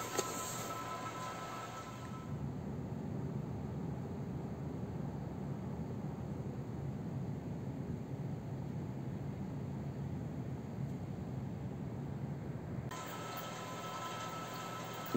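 Quiet room tone for about two seconds, then a steady low rumble of outdoor ambient noise that cuts off abruptly near the end.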